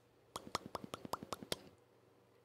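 A quick run of about a dozen small, sharp popping clicks, each with a slight upward flick in pitch, lasting a little over a second and then stopping.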